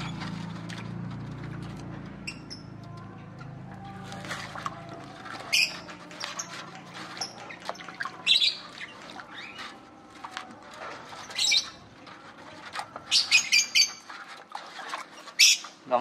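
Lovebirds in an aviary giving short, sharp chirps and squawks now and then, coming more often near the end, over a low steady hum that fades out about halfway through.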